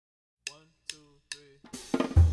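Jazz drum kit starting the track: three evenly spaced drum strokes a little under half a second apart, each ringing briefly, beginning about half a second in. Near the end the rest of the band starts to come in.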